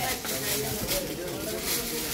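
Indistinct voices in the background, with several short rustles of heavy embroidered lehenga fabric as a garment is lifted and moved.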